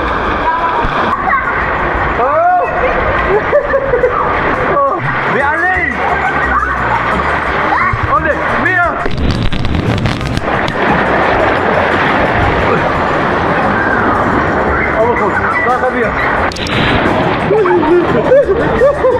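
Rushing, churning water of a wild-water river slide, with riders shrieking and whooping over it; the water noise grows denser about nine seconds in.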